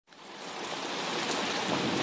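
Steady heavy rainfall, a background rain recording that fades in from silence over the first second.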